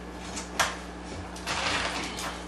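Handling noise from a cast concrete cylinder with a pipe set through it being gripped and shifted on a workbench: a sharp knock about half a second in, then a short scrape about a second and a half in.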